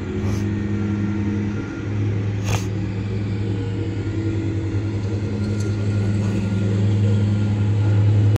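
Steady low hum of a vehicle's motor, a deep drone with overtones that grows a little louder near the end. Two brief clicks come through, about half a second in and at about two and a half seconds.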